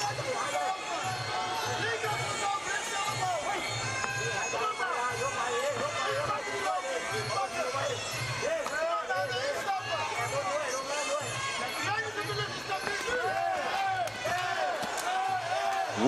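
Muay Thai ring music (sarama): a wavering, ornamented reed-pipe melody over a steady drum beat that keeps an even pulse of about three beats a second.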